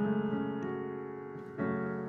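Digital piano playing sustained chords that fade slowly, with a new chord struck near the end. The chords copy the song's guitar part by ear.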